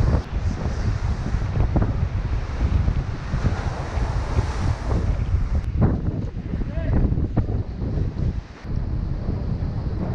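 Wind buffeting the microphone in uneven gusts, a loud low rumble that rises and falls.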